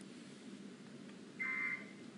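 A single short electronic beep about one and a half seconds in, over a faint steady background hum.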